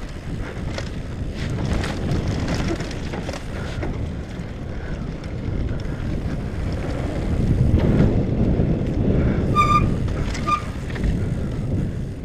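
Wind rushing over a helmet-mounted camera as a downhill mountain bike descends a rocky dirt trail, with the knobby tyres on dirt and the bike clattering and rattling over rough ground, loudest about two thirds of the way in. Two brief high squeaks near the end.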